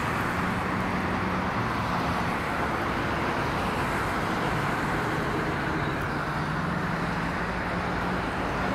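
Steady road traffic noise from cars, with a faint low hum underneath.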